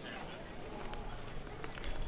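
Quiet outdoor ambience with indistinct voices, and a few faint clicks near the end.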